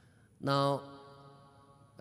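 Speech only: a man says one drawn-out "now" about half a second in, held on a steady pitch, followed by a pause with faint room tone.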